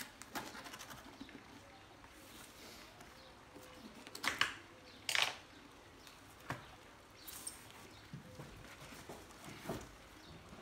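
A kitchen knife cuts along a cardboard shipping box, then the box is opened and handled. There are small scrapes and rustles of cardboard, with a few short, sharper scraping sounds around four to five seconds in and again near the end.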